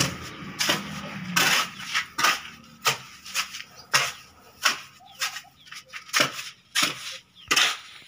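A steel hoe blade scraping and chopping into a heap of wet cement-and-gravel mortar on a concrete floor, turning the mix after water has been added. The strokes come one after another, irregularly, about one or two a second.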